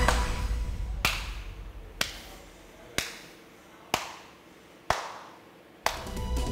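Music fading out, then six sharp clicks about a second apart, each with a short ringing tail that dies away before the next.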